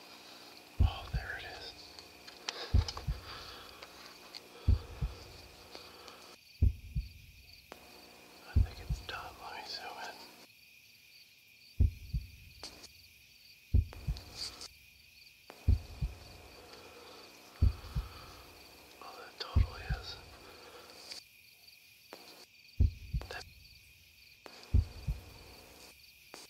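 Low thumps in pairs, like a heartbeat, repeating about every two seconds with a couple of longer gaps. A faint steady high whine runs under them.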